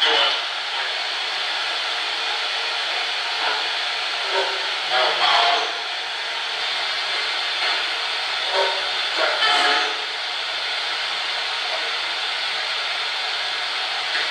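Spirit box sweeping through radio stations: a steady hiss of radio static through a small speaker, broken twice by brief garbled fragments of broadcast sound, about five and nine seconds in.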